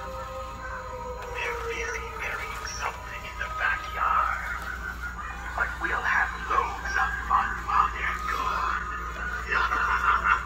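Halloween animatronic skeleton running its routine: a recorded voice speaking over music, a steady hum under it.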